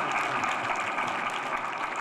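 Audience applauding, a steady wash of clapping.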